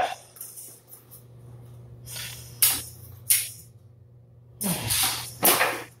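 Rapier sparring: a few short hissing scuffs and swishes from the fencers' movements and blades, the loudest near the end, over a steady low hum.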